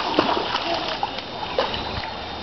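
A child's bare feet running and splashing through a shallow muddy rain puddle: a quick series of wet slaps and splatters.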